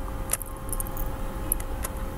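A few short clicks from a computer mouse, one about a third of a second in and two more near the end, over a steady electrical hum and low background rumble.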